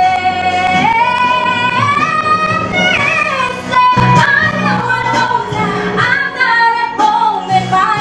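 A woman singing a song into a microphone, holding long notes that slide up and down, over instrumental accompaniment.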